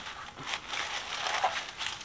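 Tissue paper and shredded-paper filler rustling and crinkling as hands dig through a small cardboard box, with irregular small crackles.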